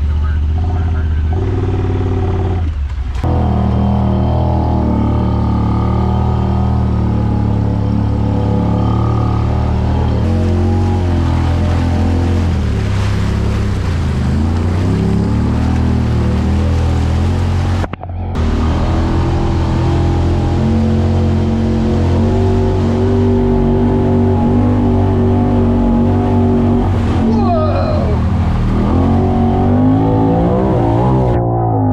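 Honda Talon side-by-side's parallel-twin engine running steadily as it drives through swamp water, with water splashing against the machine. The sound cuts out for a moment about halfway through, and the engine pitch falls near the end.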